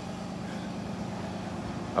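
A motor running steadily with a low hum, under outdoor background noise.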